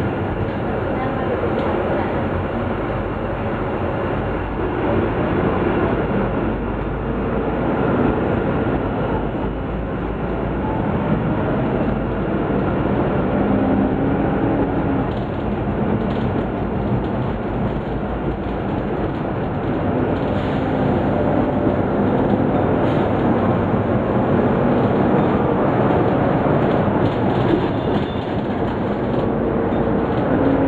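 Caio Mondego LA bodied Volvo B9 Salf articulated bus heard from inside the passenger cabin while driving: steady diesel engine and road rumble with rattling of the body and fittings. A low engine drone comes up around the middle and again near the end.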